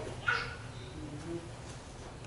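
A pause between a man's spoken sentences: faint room tone, with a brief faint high-pitched sound about a quarter-second in and a weaker low hum-like tone near the middle.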